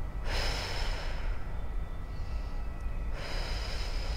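A woman breathing close to a clip-on microphone: one long airy breath starting about a quarter second in, and another about three seconds in.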